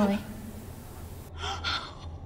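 A person gasping twice in quick succession, short sharp in-breaths about a second and a half in, over a faint low hum.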